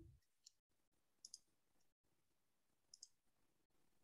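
Near silence with a few faint computer clicks: one about half a second in, a quick pair a little past one second, and one near three seconds.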